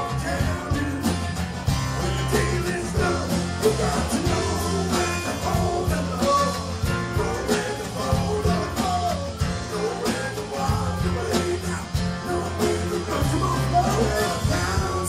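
Live country band playing an instrumental break: electric and acoustic guitars, bass and drums keeping a steady beat under a bending, gliding lead line.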